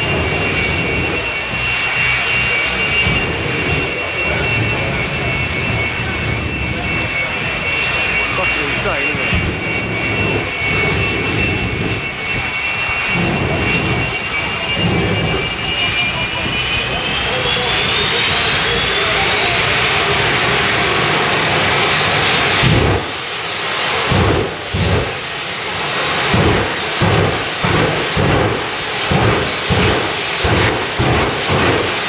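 Drag-racing car engines running loudly at the start line, with a steady high-pitched whine that rises in pitch about two-thirds of the way through. The sound then drops off suddenly and gives way to short, choppy bursts of engine noise.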